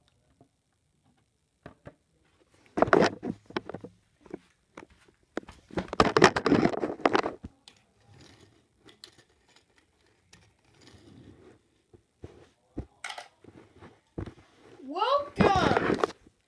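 Plastic toy figures and playset pieces being handled, with scattered clicks and two bursts of clatter and rustling. Near the end, wordless voice sounds sweep up and down in pitch.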